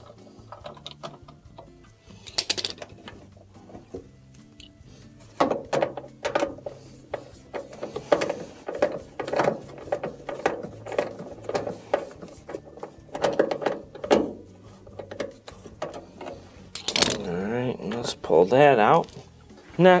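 A 5/16 nut driver backing out the stiff hex-head screws that hold a front-load washer's drain pump, giving a run of repeated clicks and creaks through the middle. A louder wavering pitched sound follows near the end.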